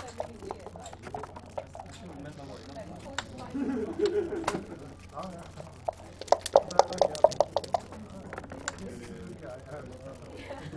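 Backgammon dice rattled in a dice cup: a quick run of sharp clacks, about six a second, lasting well over a second after the middle, then a few scattered clicks as the dice are thrown onto the board.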